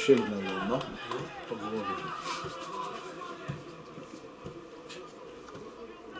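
Voices: a drawn-out exclamation that falls in pitch in the first second, then shouting that dies down to faint, distant voices about halfway through.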